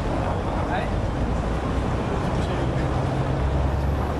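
Steady street traffic noise, with a vehicle engine's low hum growing stronger about halfway through.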